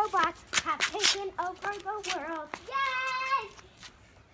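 Young girls' voices chattering in a sing-song way, with one long held sung note near the end, over short thumps from their jumping.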